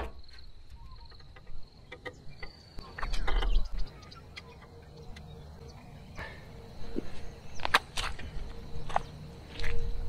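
Tie wire being wrapped by hand onto barbed gate wires to fix a spreader bar in place, heard as scattered sharp clicks and rattles, with a louder rustle of handling about three seconds in. A steady high insect drone runs until about three seconds in.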